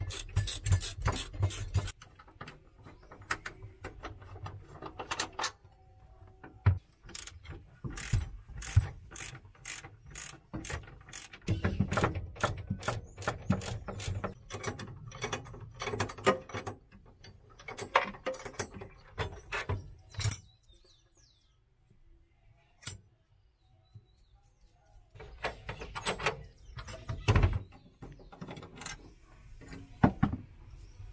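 Hand wrenches working the nuts and bolts of a VW Beetle's pedal cluster, in quick runs of metallic clicks and clinks as the fasteners are loosened. There is a short quiet pause about two-thirds of the way through.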